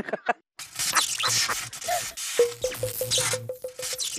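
A comic television sound-effect cue with music: a noisy burst with sweeping tones, then a rapidly repeating buzzy beep, about eight pulses a second, over a low hum.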